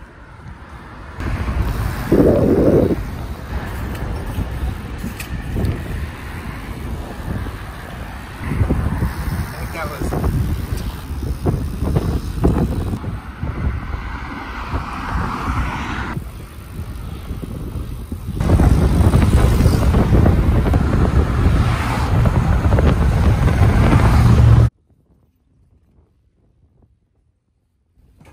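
Wind buffeting a moving camera's microphone while riding a BMX bike along city streets, a loud rumbling noise that grows louder for the last few seconds and then cuts off abruptly near the end.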